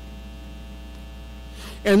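Steady electrical mains hum with a low buzz, heard through a pause in speech; a man's voice comes back in near the end.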